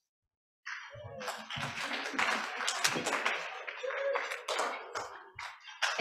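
An audience applauding a speaker's introduction. The applause comes in suddenly after a split second of dead silence and dies away just before the speaker begins.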